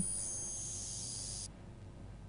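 Faint, steady high-pitched whine of several tones together, cutting off suddenly about one and a half seconds in.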